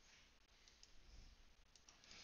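Near silence, with a few faint clicks in the second second.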